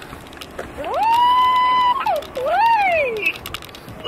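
A high-pitched, drawn-out vocal exclamation: the voice rises, holds one pitch for about a second, then swoops down, up and down again.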